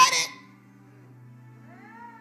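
A woman's amplified preaching voice cuts off in the first moment, leaving a steady low hum with faint held tones under it. Near the end comes a faint voice-like sound that rises and falls in pitch.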